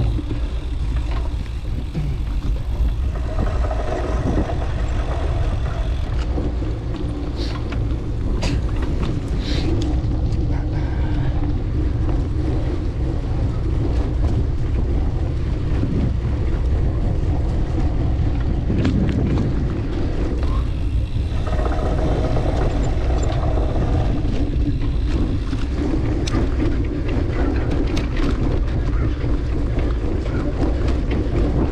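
Wind buffeting the action camera's microphone over the rumble of a cyclocross bike's tyres and frame on bumpy grass as it is pedalled hard, with scattered clicks and knocks from the bike.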